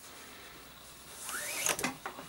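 Nylon paracord being handled against a plastic buckle: about halfway in, a soft rubbing rustle with a brief rising squeak, then a few light clicks near the end.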